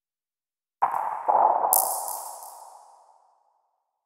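Logo sound-effect sting: a sudden ringing hit about a second in, a second hit just after, and a bright high shimmer layered on top, all fading out over about two seconds.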